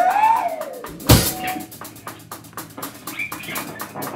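Live rock band playing: a wavering guitar squeal in the first second, one loud drum-and-cymbal hit about a second in, then a fast run of light drum strokes.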